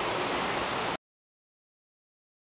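Steady hiss of rain during a thunderstorm for about a second, then the sound cuts off abruptly to dead silence; the lightning flash brings no thunder.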